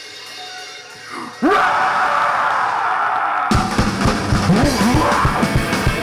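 Live garage-punk band starting a song. After a quieter moment, a sudden loud blast of distorted electric guitar and yelling comes in about a second and a half in. The drums kick in with a fast, steady beat about halfway through, and the full band plays on.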